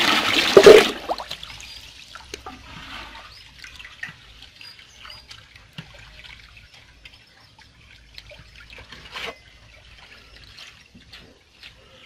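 Water splashing loudly in a basin for about the first second, then faint small splashes and drips as a hand moves through salt water, lowering an egg in to test whether the brine is strong enough to float it.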